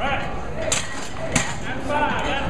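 Voices echoing in a large gym hall, with two sharp knocks about two-thirds of a second apart.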